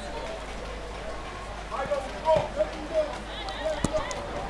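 Football ground ambience with scattered high-pitched shouts and calls from players and spectators, getting busier about halfway through, and a single sharp knock near the end.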